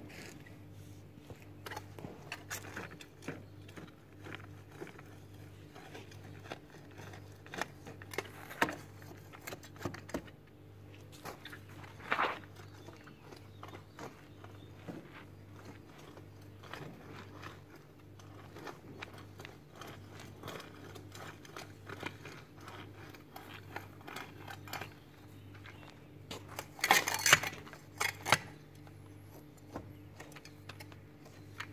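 Steel garden hoe scraping and chopping through soil and weeds, a run of short scrapes and clinks, with a louder flurry of strokes near the end.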